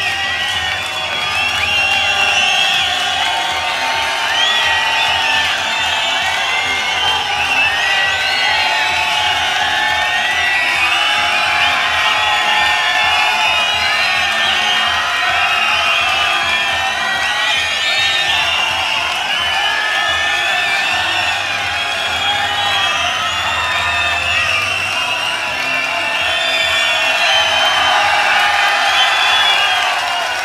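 Live concert audience cheering, whistling and shouting, many voices and whistles overlapping without a break.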